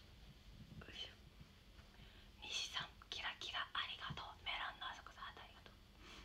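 A young woman whispering in short breathy phrases for about three seconds, starting about two seconds in.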